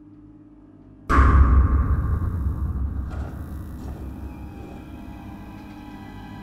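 A sudden deep boom about a second in, dying away in a long rumble over the next few seconds, over a low droning music bed.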